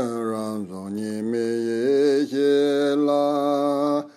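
A man chanting a Tibetan Buddhist prayer to Tara, singing it in long, steadily held notes. The pitch dips briefly twice between phrases.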